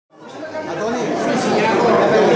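Many people chatting at once in a room, a hubbub of overlapping voices that fades in from silence over about the first second.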